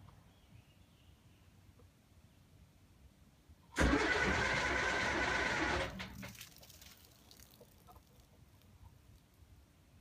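Electric starter briefly cranking a cold, unprimed Perkins diesel for about two seconds; it starts abruptly and winds down without the engine catching.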